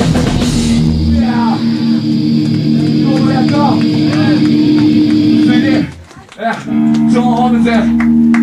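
Live hardcore punk band stops about a second in, leaving an electric guitar ringing through its amp in two steady held tones while voices talk over it. The ringing cuts out briefly about six seconds in, then comes back.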